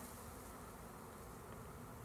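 A disturbed swarm of honeybees buzzing steadily after being shaken from their branch into a hive box; the bees are excited.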